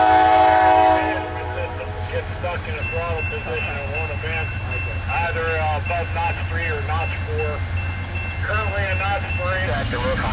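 Air horn of a Norfolk Southern GE Dash 9-44CW diesel freight locomotive sounding a steady chord of several notes, cutting off about a second in. After it, the low steady drone of the approaching locomotives' diesel engines, with voices over it.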